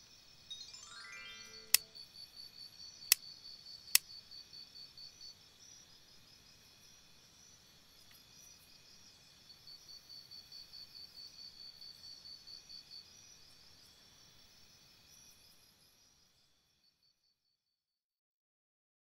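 Quiet soundtrack made of music and effects. Near the start a short run of chime-like tones rises in pitch, three sharp clicks follow in the first few seconds, and a high cricket-like chirp pulses about five times a second in two stretches. The sound fades out near the end.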